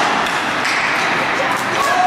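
Ice hockey play in a rink: sharp clacks of sticks on the puck and skate scrapes, several close together near the end, over people's voices and the hall's steady background noise.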